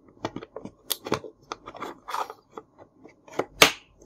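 Hard plastic clicking and tapping as a toy playset's plastic hook rail is worked and pressed into its plastic lid, with one loud snap just before the end.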